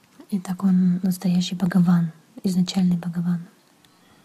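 A person speaking for about three seconds, with a short break in the middle.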